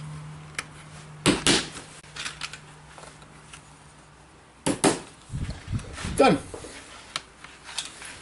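A small lead hammer tapping flat horseshoe nails into a wooden workboard at the lead came joints, pinning the leadlight panel tight: a few sharp, spaced taps, the loudest about a second and a half in.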